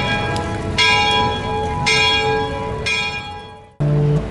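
A church bell tolling, three strokes about a second apart, each stroke ringing on into the next, then the sound fades out just before the end.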